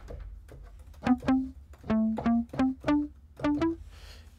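Cakewalk SI-Bass Guitar virtual instrument on its 'Crunchy Mute' preset, playing short muted plucked bass notes in a line that climbs in pitch. It is quiet for about the first second, then about nine clear notes.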